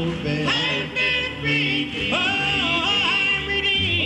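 Male Southern gospel quartet singing in close harmony, holding long notes with vibrato, a high voice on top and a low bass underneath; the chord changes about half a second in and again about two seconds in.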